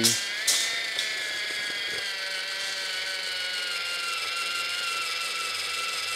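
Black & Decker AutoTape's small battery-powered motor whining steadily as it drives the tape blade out, its pitch sagging slightly, with a couple of sharp clicks in the first second. It is not sounding healthy.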